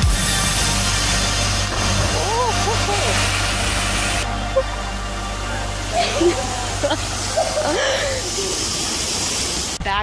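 Steady rush of a waterfall pouring over a dam edge, with people shouting and whooping a couple of times over it, and music playing underneath.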